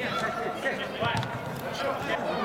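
Footballers' voices calling across an indoor artificial-turf pitch, with a few sharp thuds of the ball being kicked or bouncing, about half a second and a second in.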